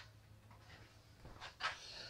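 Quiet room tone with a faint steady low hum, and a soft breath a little before the end.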